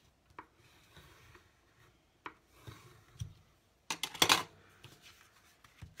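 Cardstock being handled on a craft mat: a few light taps, then a short, loud papery rustle and scrape about four seconds in.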